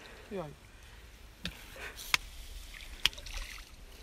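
Water sloshing and dripping as a landing net with a freshly caught fish is lifted out of a pond, with three sharp knocks about a second apart.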